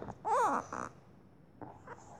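A child's short wordless vocal sound, a brief hum-like "hm" with breath, whose pitch rises and falls, about half a second in; the rest is quiet.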